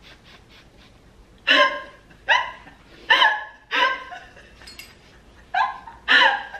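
A man coughing and gagging on a mouthful of dry cinnamon: about six short, harsh voiced bursts, starting about a second and a half in and coming roughly every three-quarters of a second.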